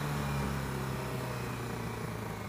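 Yamaha R6 sport bike's inline-four engine running at a steady cruising note while the bike rides along the road.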